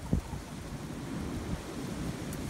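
Low rumbling wind noise buffeting the microphone, with a single sharp thump just after the start.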